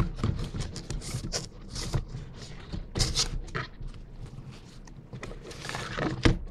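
A white cardboard box and the black fabric fanny pack inside it being handled: irregular rustling and scraping as the pack is pulled out and unfolded, with a sharp knock at the start.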